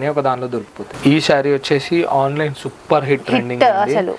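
A person talking; the words are not made out.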